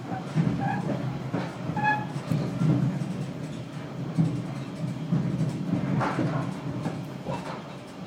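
Moving passenger train heard from inside the carriage: a steady low running rumble that swells and eases.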